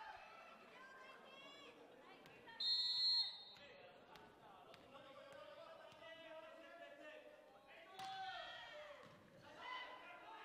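Echoing gym ambience between volleyball rallies: players' and spectators' voices in the hall, with a short shrill whistle blast about two and a half seconds in.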